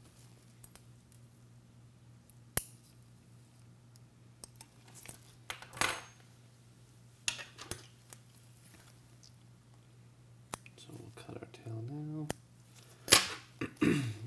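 Scattered sharp metallic clicks and snips from handling a surgical needle holder and scissors while a suture is tied off on a model, about eight in all, the loudest near the end.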